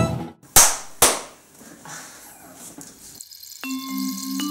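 Two loud, sharp strikes about half a second apart, each ringing off, then a low hiss. Near the end, music of held mallet-percussion notes begins.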